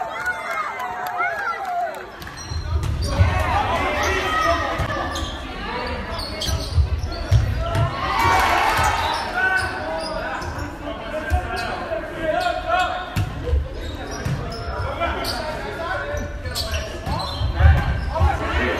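Gym sound during a volleyball match: players and spectators talking and calling out, with the sharp smacks of the volleyball being hit and bouncing, echoing in a large gymnasium.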